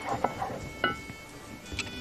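Soft background music, with a few light knocks of a wooden spoon mashing and stirring potatoes in a metal pot.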